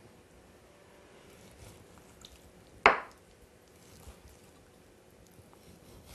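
A chef's knife cutting orange segments free on a wooden cutting board: faint small cutting sounds, with one sharp knock of the blade on the board about three seconds in.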